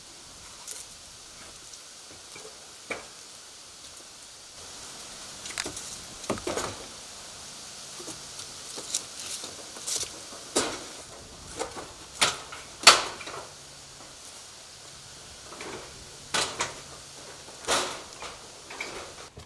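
A covered barbecue grill being wheeled across wooden deck boards and hauled up wooden steps: a string of irregular knocks and clunks, the loudest about 13 seconds in.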